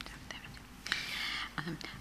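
A short breathy whisper close to a microphone, lasting about half a second, then a spoken 'um'.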